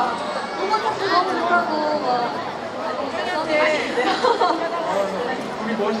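Speech: women talking into handheld microphones, with overlapping chatter.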